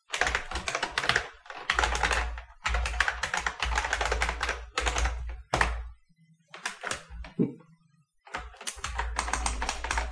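Typing on a computer keyboard: quick runs of keystrokes with short breaks, slowing to a few scattered key presses a little past the middle, then another quick run near the end.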